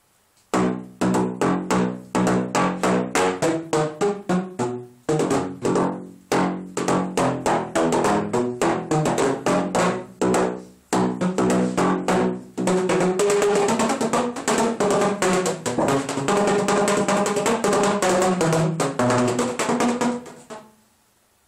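PVC pipe instrument played by slapping paddles on the open pipe ends: a fast run of pitched, hollow notes making a tune. It starts about half a second in and pauses briefly twice before going on.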